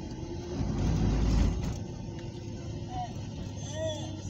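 Car driving along a road, heard from inside the cabin: a steady low road and engine rumble that swells louder for about a second shortly after the start.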